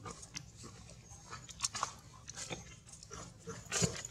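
A macaque chewing food: irregular short crunching clicks, the loudest near the end.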